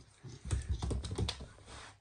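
A puppy's claws clicking and tapping on a laminate floor as it trots, a quick run of light clicks that starts with a dull thump about half a second in and fades out.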